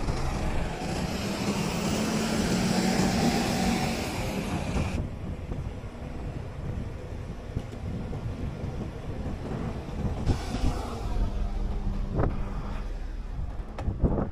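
Street traffic heard from a moving bicycle, with a city bus running close ahead and a steady low rumble of road and wind noise. A loud hiss over the first five seconds cuts off suddenly, and a fainter hiss returns near the end.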